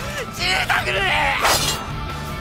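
A voice making short non-verbal sounds, then a sharp, bright metallic ring near the end: an anime sword-glint sound effect, over a low music bed.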